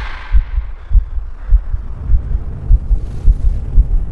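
A deep, low thudding pulse like a heartbeat, about two to three beats a second, as the song's full music fades out at the start.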